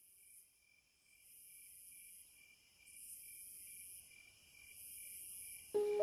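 Quiet opening of a chillstep electronic track: a fast-pulsing high tone under soft swells of airy high hiss that come about every two seconds. A loud sustained synth chord enters shortly before the end.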